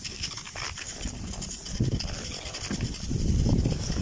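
Cross-country skis sliding and crunching on packed snow, with hard breathing, growing louder in the last second or so.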